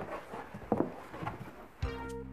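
A few soft knocks and rustles of small cardboard boxes being handled as packing into a larger box begins. Background music starts near the end.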